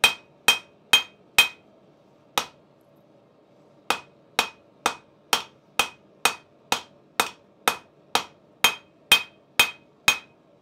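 Hand hammer striking a hot steel bar on a small Vevor Acciaio anvil, about two blows a second with a ringing note on each, while forging a shoulder at the anvil's edge. The rhythm pauses once briefly about two and a half seconds in, then carries on steadily.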